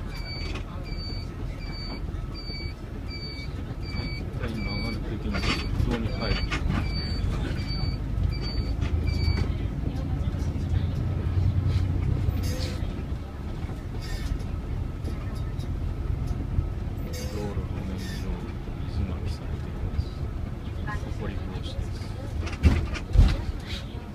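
City bus engine and road noise heard from inside the cabin, with an electronic turn-signal beeper giving short high beeps about twice a second while the bus turns. The beeping stops about nine seconds in, and the engine's rumble rises a little soon after as the bus pulls away along the straight road.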